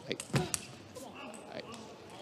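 Three short, sharp knocks in the first half-second or so, the middle one the loudest, over a faint steady background.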